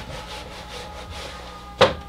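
Faint rubbing of an eraser wiped across a whiteboard, with one short sharp click near the end.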